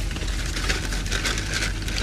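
A plastic poly mailer bag rustling and crinkling as hands rummage inside it.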